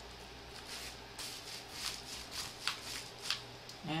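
Paper packing envelope and foil ration pouch rustling and crinkling in the hands as the wire-wrapped pouch is slid into the envelope, with a handful of sharper crinkles.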